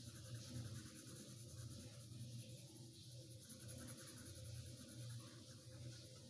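Faint scratching of a coloured pencil shading on paper, in continuous back-and-forth strokes.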